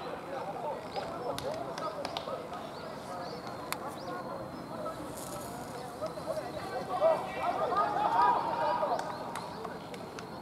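Several men's voices talking and calling out indistinctly across an open rugby pitch, louder for about two seconds near the end, with a few sharp clicks.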